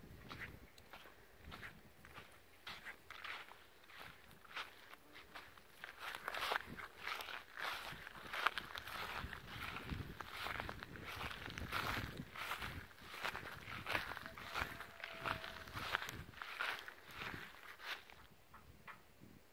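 Footsteps walking through grass at a steady pace, getting louder about six seconds in.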